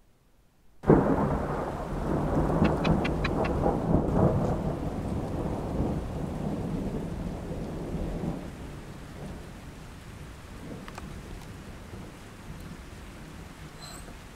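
A thunderclap breaks suddenly about a second in, rumbling and slowly fading over the next several seconds, with steady rain going on underneath.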